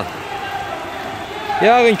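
A man's voice commentating, with one loud stretch of speech near the end, over steady background noise.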